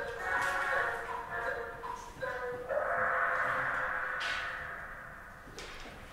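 Indistinct, muffled talking with no clear words. A few short broken phrases come in the first couple of seconds, then a steadier murmur that fades out near the end.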